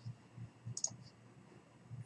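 Faint clicks of a computer mouse, a few short ticks in the first second, over a low steady hum.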